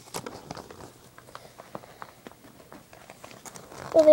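A folded paper pamphlet being opened out and handled, with soft, irregular crinkling and rustling.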